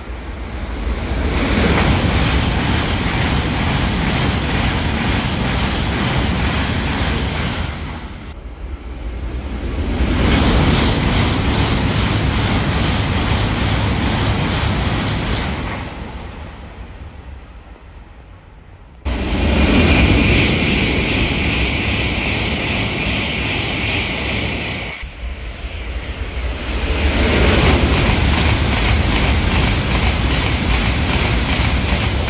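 E7/W7-series Shinkansen trains running through a station at speed: a loud, steady rush of air and wheels on rail, swelling and fading with each pass. The sound breaks off and jumps abruptly a few times, and in one stretch a steady high whine rides over the rush.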